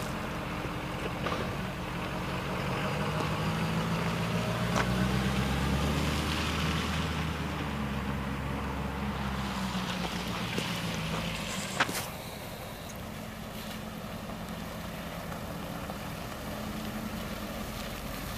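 The 2015 Ford F350's 6.7L V8 diesel engine running. It grows louder from about three seconds in and eases back by about eleven seconds. A sharp click comes just before twelve seconds, after which the engine runs more quietly.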